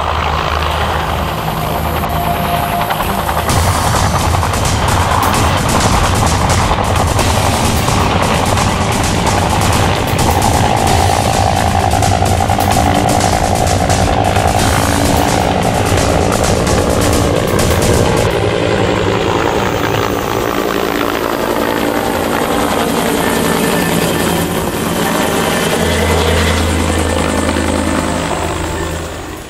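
CAL FIRE UH-1H Huey helicopter lifting off and flying past, its rotor chopping hard with a fast, even blade-slap beat. The chop eases after about eighteen seconds, and the low rotor sound grows again near the end as it passes overhead.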